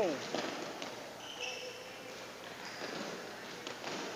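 Sports shoes stepping and squeaking on a synthetic badminton court mat during footwork drills, with light background chatter in a large hall; two short high squeaks a little over a second in and near three seconds.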